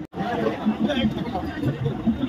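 Chatter of several people talking, after a brief dropout at the very start.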